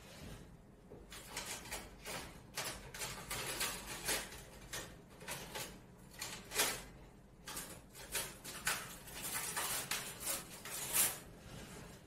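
Large aluminium pot of water boiling with penne in it, bubbling with irregular pops and splutters, some louder than others.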